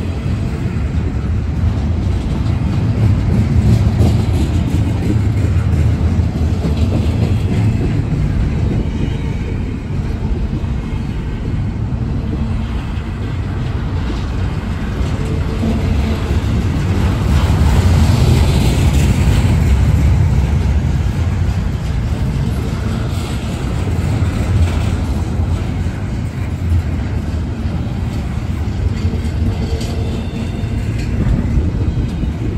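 Double-stack intermodal freight train rolling past: a steady low rumble of steel wheels on rail and the well cars, swelling a little a few seconds in and again for a few seconds just past the middle.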